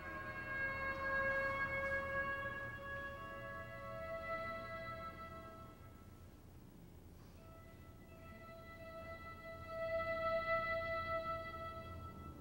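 Solo violin playing slow, long held notes, with a steady low hum beneath. The notes fade to a quiet stretch about halfway through and swell again near the end.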